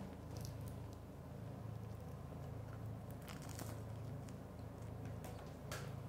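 A quiet room with a low steady hum and a few faint clicks and crunches as a piece of toasted bruschetta is picked up off a wooden board and lifted to the mouth.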